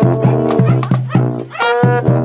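Marching drum and mallet corps playing: brass over a held low bass note, with a run of short notes and regular drum hits.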